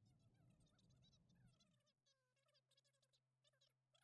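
Near silence: the sound track drops out entirely.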